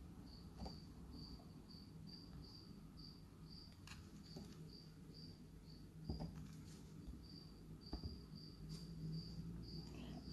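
Faint, steady train of short high beeps, about three a second, from an electric cooktop's touch panel reacting to a cat standing on the controls. A few faint clicks fall in between.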